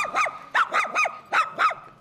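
Mixed-breed dog barking rapidly, about seven sharp barks in quick succession.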